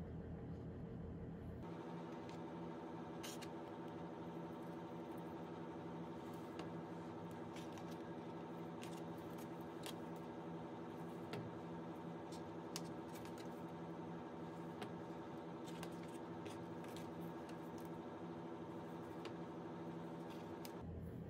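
A steady hum with faint, scattered clicks and rustles as cardboard cutouts and a plastic glue bottle are handled while pieces are glued down.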